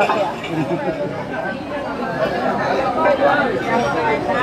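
Several people talking at once around a table: overlapping conversation with no one voice standing out.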